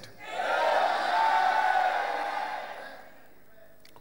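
A church congregation cheering and shouting together, swelling about half a second in and dying away by about three seconds.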